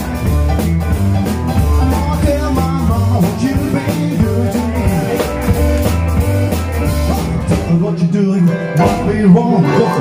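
Rockabilly band playing live: upright bass and drum kit under electric guitar and keyboard, with no lyrics sung. The bass drops out for a moment near the end, then comes back in.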